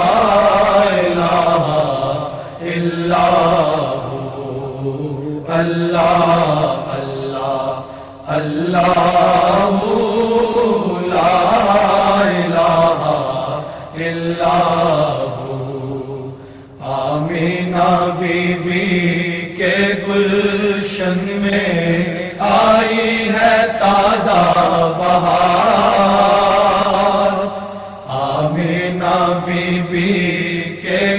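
Devotional Islamic chanting in a naat: a voice sustains long melodic phrases of 'Allah' zikr that rise and fall in pitch, with brief breaths between phrases every few seconds.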